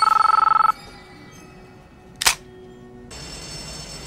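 Mobile phone ringing with a fast electronic trill of two tones, which stops less than a second in. About two seconds later there is one sharp click.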